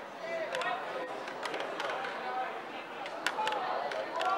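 Faint voices of players calling out on an ultimate frisbee field, with a few short, sharp sounds scattered through.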